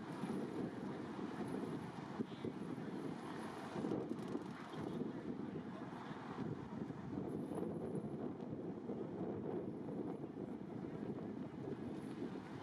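Outdoor open-air ambience: a steady, fluttering low rumble of wind buffeting the microphone over faint distant city traffic.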